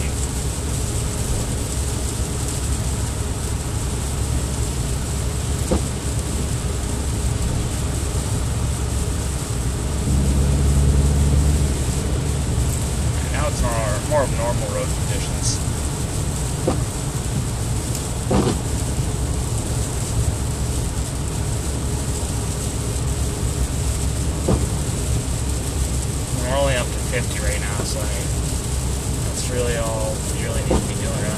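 Road noise inside a moving car's cabin: tyres hissing on a wet, slushy road over a steady low rumble, louder for about two seconds around ten seconds in.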